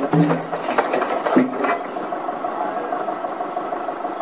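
A forklift engine runs while logs balanced across its forks knock and shift, with sharp wooden knocks in the first second and a half. A steady whine follows.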